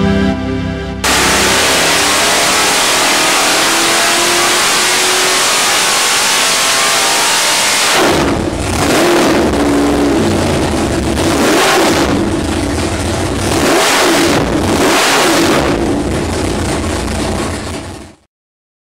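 Naturally aspirated, carbureted 632 cubic-inch (10.4 L) big-block Chevrolet V8 running very loud on an engine dyno: first a sustained high-rpm run with the pitch slowly climbing, then from about eight seconds in a string of throttle blips, each rev rising and falling. It cuts off suddenly at the end.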